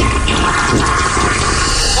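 A toilet flushing, a steady rush of water, with music underneath.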